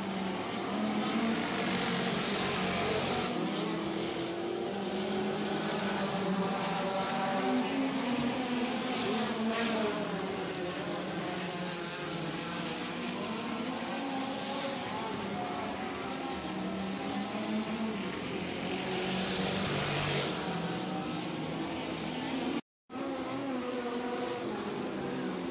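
Several race car engines running at speed around a dirt oval, their engine notes rising and falling as the cars accelerate and lift off. The sound cuts out completely for a moment near the end.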